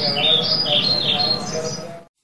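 Small birds chirping: a quick run of short, falling chirps over a faint, soft music bed, fading out at the end.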